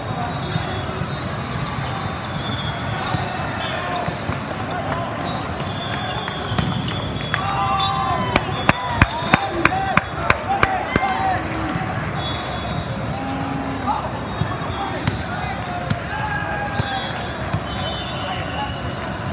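Indoor volleyball hall ambience: a steady din of many voices from players and spectators, with a quick run of about nine sharp smacks, roughly three a second, around the middle.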